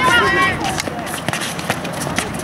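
A voice calls out briefly at the start, then a run of sharp taps and scuffs from players running and the ball being dribbled and kicked on a hard futsal court.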